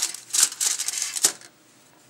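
Crinkly rustling of a chocolate bar's foil wrapper as the bar is handled, a dense run of small crackles that stops about a second and a quarter in.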